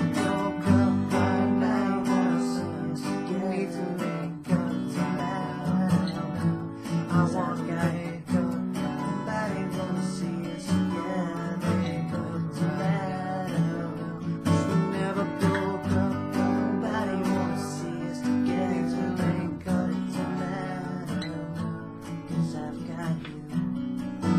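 Two acoustic guitars strumming chords together in a steady rhythm, an instrumental passage with no vocals.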